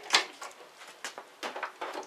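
A few short clicks and light metallic knocks as a hand tool is worked on the motorcycle's fittings beneath the seat, loosening it for removal. They are scattered, with more in the second half.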